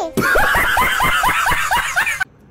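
A person laughing hard in a quick run of short, falling bursts, about six a second.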